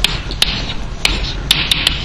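Chalk writing on a blackboard: the chalk strikes the board in sharp taps, about five over two seconds, with scratchy strokes between them.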